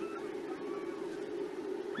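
A faint, steady low hum with light background noise, coming through the open broadcast microphone between the commentators' lines.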